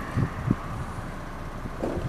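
Camera handling noise in a car's rear cabin: a steady low rumble with two soft low thumps about half a second in and another just before the end.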